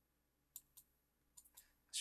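A handful of faint computer mouse clicks, about six short ticks between half a second in and near the end, over near silence.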